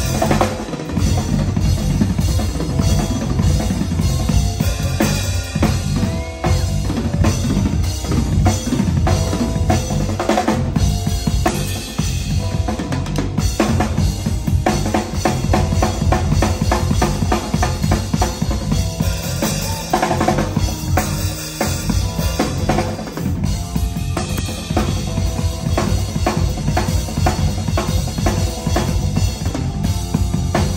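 Live Latin jazz band playing, with the drum kit and percussion loud and up front: steady kick drum, snare and rimshot strokes and cymbals, with other instruments held underneath.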